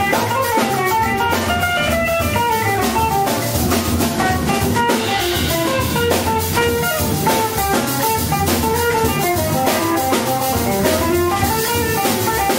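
Live small band: electric guitar, upright double bass and drum kit playing together, a quick melodic line of single notes moving over low bass notes, with cymbals riding on top.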